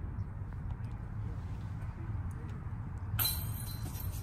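A disc golf putt striking the metal chains of a basket near the end, a sudden metallic chain rattle as the disc bounces off and out. A steady low background rumble runs underneath.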